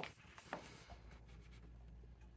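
A page of a hardcover picture book turned by hand: a faint paper rustle with a light tap about half a second in.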